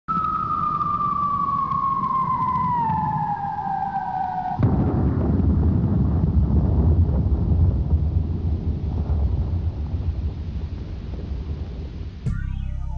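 Intro sound effect: a whistle falling slowly in pitch over a low rumble, then a sudden boom about four and a half seconds in, its deep rumble slowly fading away.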